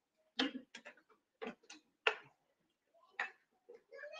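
A person drinking from a bottle close to the microphone: a handful of short, irregular gulping and clicking sounds.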